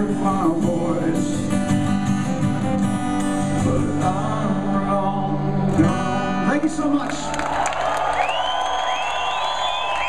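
Live solo acoustic guitar and male vocal, the last notes held and ringing out. About seven seconds in, the audience breaks into cheering and whistling.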